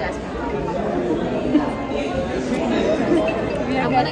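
Speech: women talking close to the microphone, over the chatter of other people around them.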